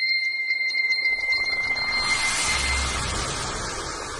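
Title-sequence sound design: a high chiming tone with light ticks fades out as a rushing whoosh with a low rumble swells in from about a second in.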